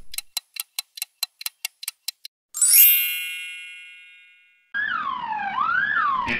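Cartoon sound effects: a quick run of about a dozen short ticks, then a single bright chime that rings and dies away over about two seconds, then an ambulance siren wailing down and up near the end.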